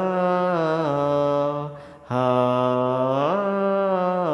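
A man singing a Bengali Islamic gojol in two long, drawn-out notes with a short break about two seconds in. The first note steps down in pitch about a second in; the second climbs back up near the end.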